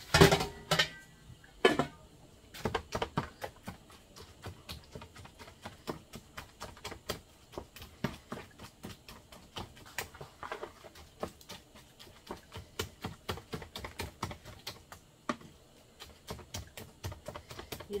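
Wooden spoon knocking quickly and steadily against a plastic mixing bowl as blended fish is stirred, several knocks a second, easing off near the end. A few louder clatters in the first two seconds, from the aluminium lid being set on the pot.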